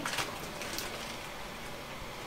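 Steady quiet room hiss with a few soft rustles from a resistance band being handled.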